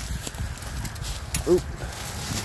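Rustling and crunching in dry leaves and brush with a few light knocks, then a short "oop" from a man about a second and a half in as the headlight comes loose from a rusted 1950 Packard's front end.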